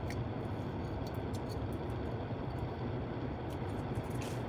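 Steady low hum inside a parked car, with a few faint small clicks from a china saucer being handled.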